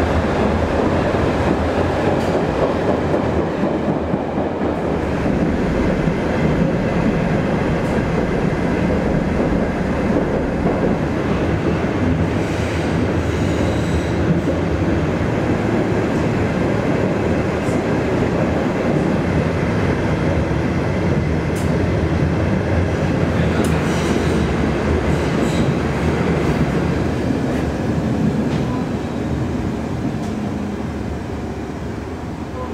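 Berlin U-Bahn series D57 ('Dora') train running on the rails: a steady, loud rumble of wheels on track, with faint wheel squeals around the middle and again a few seconds before the end. The noise eases off near the end.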